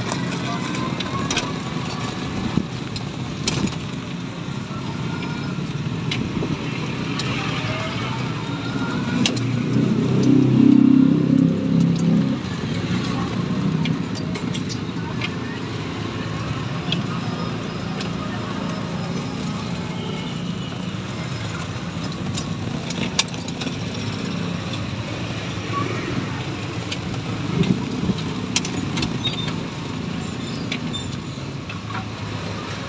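Road and traffic noise heard from inside a moving electric tricycle on a wet street: steady tyre and road noise with scattered light clicks and rattles. A louder vehicle engine comes through for about two seconds around ten seconds in.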